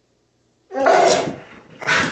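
A pit bull-type dog barking loudly and rushing forward, with one outburst about three-quarters of a second in and a second one starting near the end.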